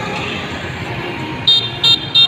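Motor scooter horn beeping twice in quick, short, high-pitched toots near the end, over steady street traffic noise.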